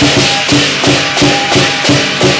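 Lion dance percussion: a large drum beaten in a steady rhythm with clashing cymbals ringing over it, about three strikes a second.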